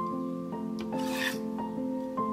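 Instrumental music with held notes that change pitch every half second or so. About a second in comes a brief scratchy rasp of wool fiber being worked across the toothed carding cloth of a drum carder.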